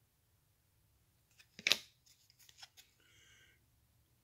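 A trading card being handled and swapped for the next: one short sliding swish a little before the middle, then a few faint clicks.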